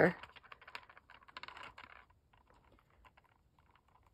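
12 mm striped beads clicking lightly against each other and the plate as they are moved about: a run of faint small ticks over the first two seconds, then near silence with only a stray tick or two.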